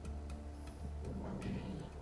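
Faint, evenly spaced ticking over a steady low electrical hum, in a pause between voices on a remote link.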